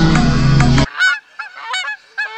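Pop song music cuts off abruptly just under a second in. A sound effect of several short honks in quick succession follows, each one a brief rise and fall in pitch.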